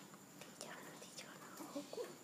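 A person whispering faintly.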